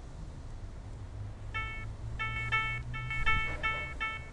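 Short, identical electronic beeping notes repeating about three times a second, starting about a second and a half in, over a low steady hum. They are computer-generated tones triggered by movement in a video.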